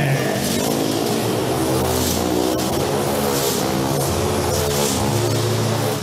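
Motorcycle engine running steadily at speed inside a steel mesh globe of death, as the rider circles in the sphere.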